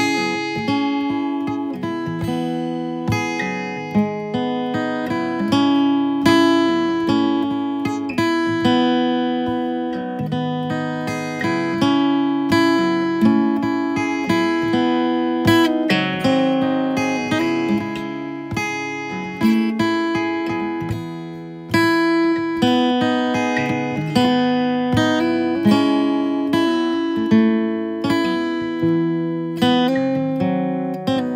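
Background music: acoustic guitar, with notes picked one after another.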